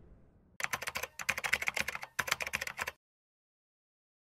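Rapid computer-keyboard typing clicks in three short runs, starting about half a second in and stopping about three seconds in.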